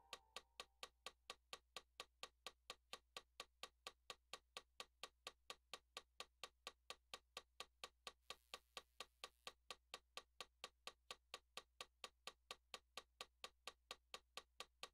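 Steady metronome clicks, about four a second, with the keyboard's last notes dying away at the start. A brief faint rustle of a plastic bag comes about eight seconds in.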